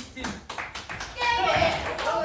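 A few people clapping their hands, a quick run of separate claps, with a voice calling out in the second half.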